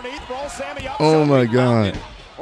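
A man's voice: two loud drawn-out exclamations in the second half, each falling in pitch, with a fainter voice before them.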